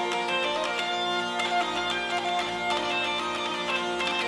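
Zanfona (hurdy-gurdy) playing a melody on its keyed strings over steady drone strings, all sounded by its cranked wheel rubbing the strings.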